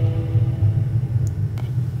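A steady low rumble, with faint held tones above it that fade out about halfway through.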